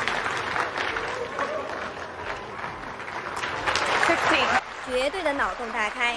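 Audience applauding a snooker shot. The clapping stops about four and a half seconds in, and a voice is heard near the end.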